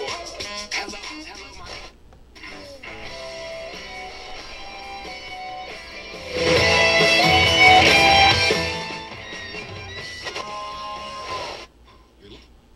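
Guitar music playing from a Sharp GF-9494 boombox's radio. It dips briefly about two seconds in, gets louder for a few seconds in the middle, and cuts off sharply just before the end.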